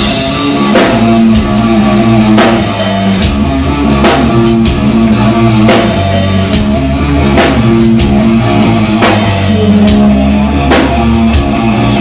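Loud live rock jam: an electric guitar playing over a drum kit, with a steady beat of drum and cymbal hits under shifting low notes.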